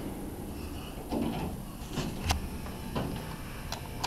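Sliding doors of a Dover hydraulic elevator closing with a brief rumble, then a few sharp clacks and knocks, the loudest about two and a half seconds in.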